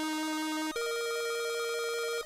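Synthesized intro jingle: held electronic notes with a bright, buzzy tone, the lower note stepping up in pitch about three-quarters of a second in.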